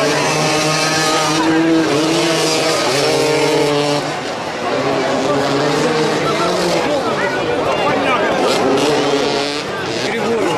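Several motoball motorcycles' engines running and being revved, their pitch holding and then rising and falling, with a brief drop in level about four seconds in.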